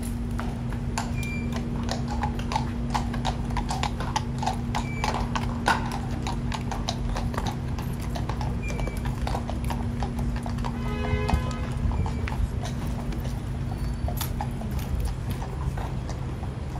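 Hooves of Household Cavalry horses clip-clopping on stone paving, with many quick strikes at first and sparser ones later. A steady low hum runs underneath and stops near the end.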